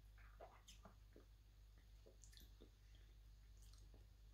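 Near silence, with a few faint, short, wet sounds of sipping an iced shake through a plastic straw and swallowing.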